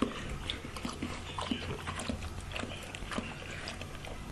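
Dog lapping water from a plastic bowl: a steady run of wet laps, about three a second.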